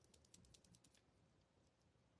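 Near silence: room tone, with a faint run of light ticking clicks in the first second and a few more later.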